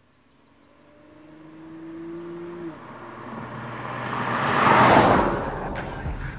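A car approaching and passing close by on a country road. Its engine note climbs and then drops once about two and a half seconds in, and its tyre and road noise swells to loudest about five seconds in, then fades as it goes past.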